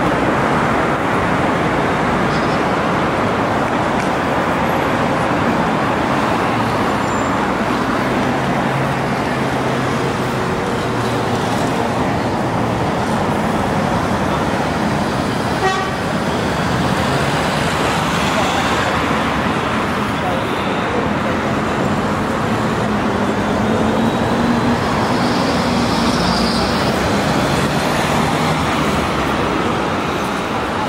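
Busy city street noise: a steady rush of road traffic with car engines, mixed with people's voices.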